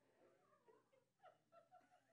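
Near silence: room tone with faint, indistinct voices.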